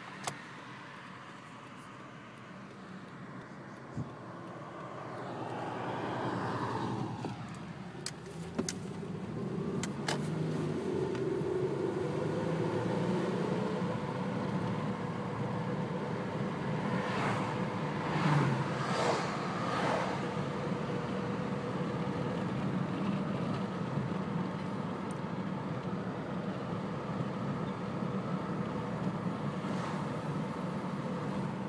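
A 2003 Toyota Camry's engine and road noise heard from inside the cabin while driving. About five to eight seconds in, a sound glides down in pitch as the overall level rises, and after that the engine settles into a steady, louder drone.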